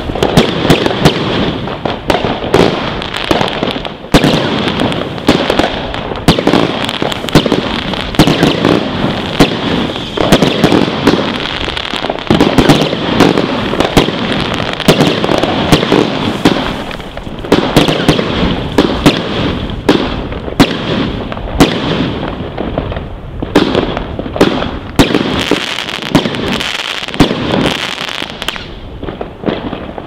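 Wolff 'Cruel Traction' firework cake firing a rapid, continuous barrage of shots and overhead bursts, many bangs overlapping, which thins out and dies away near the end.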